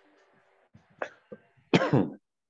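A person coughing once near the end, heard through a video-call microphone, after a couple of short faint knocks.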